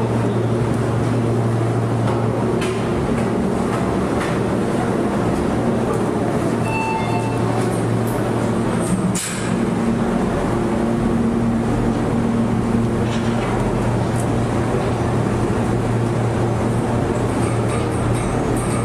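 A bridge-tower maintenance elevator running: a steady low hum with rumbling noise, briefly dipping about halfway through.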